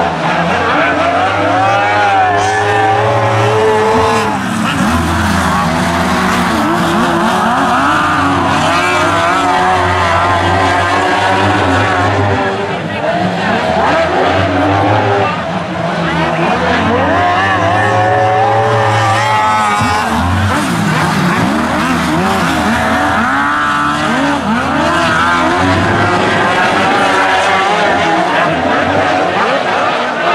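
Several speedway sidecar outfits' engines racing around a dirt oval, revving up and down together as they run through the corners.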